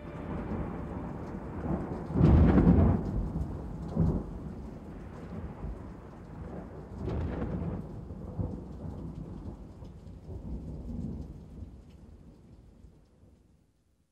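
Thunder rumbling in long rolling peals, loudest about two seconds in, with a sharp crack near four seconds and another swell around seven seconds, then slowly dying away to nothing near the end.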